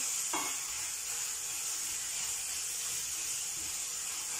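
Onions, garlic and ginger frying in olive oil in a stainless steel frying pan: a steady sizzle as they are stirred around.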